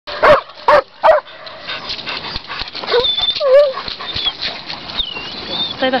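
German Shepherd dogs barking, three loud barks in quick succession at the start. Softer, wavering whines and yelps follow.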